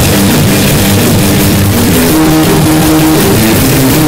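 Punk rock band playing an instrumental passage of a song: loud electric guitar and bass notes over drums and cymbals, from a demo recording.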